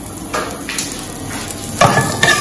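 Onion slices sizzling steadily in hot oil in a nonstick pot. There is a knock about a third of a second in, and a louder one near the end as a wooden spoon goes into the pot to stir.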